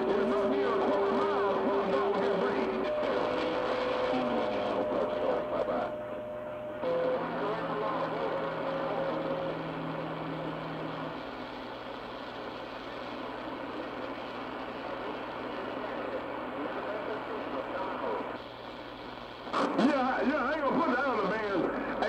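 CB channel 6 (27.025 MHz) AM skip on a shortwave receiver: a steady hiss of static with steady whistle tones from overlapping carriers that shift pitch in the first half, and garbled distant voices. A short lull comes just before the voices return loudly near the end.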